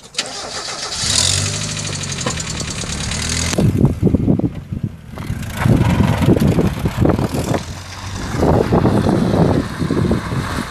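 1992 Mazda MX-5 Miata's 1.6-litre four-cylinder engine starting up and running steadily. From about three and a half seconds in, an uneven rumble follows as the car moves off across gravel.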